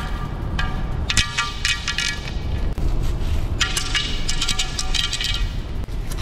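Background music with a steady heavy bass and bright chords that come in short bursts.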